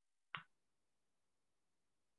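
Near silence with a single short, sharp click about a third of a second in.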